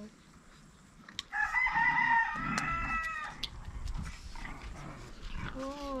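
A rooster crows once, one call of about two seconds starting about a second in.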